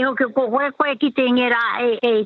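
Speech only: a woman talking over a telephone line, her voice thin and cut off in the highs.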